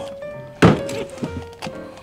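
A heavy knife chopping through cod bones and head onto a plastic cutting board: one loud sharp chop about two-thirds of a second in, then a few lighter knocks. Background music plays throughout.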